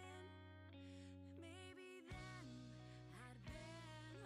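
Quiet background music with guitar: a steady bass under a gliding melody line.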